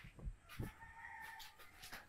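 A rooster crowing faintly, one drawn-out call starting about half a second in and held for over a second.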